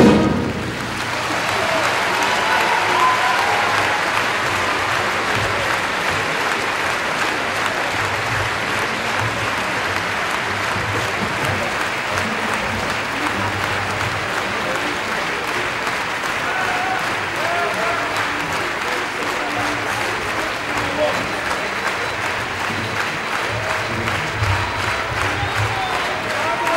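Large theatre audience applauding steadily and without a break, with scattered voices calling out in the crowd. The orchestra's last chord cuts off at the very start.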